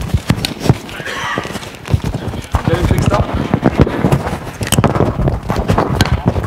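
Microphone handling noise: a rapid run of knocks, clicks and rustles as a microphone is handled and fitted, with indistinct low voices underneath.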